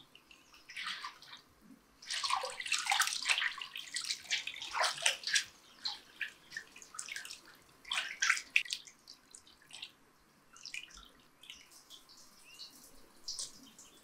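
Hands sloshing and splashing water in a large metal pot while washing raw chicken livers, loudest from about two to six seconds in and again briefly around eight seconds. After that, quieter drips and small splashes as the livers are squeezed and lifted out.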